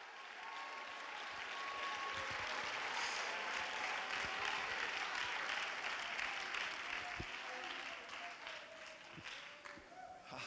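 Congregation applauding in response to a sermon, swelling over the first few seconds, holding, then dying away near the end, with faint voices calling out over the clapping.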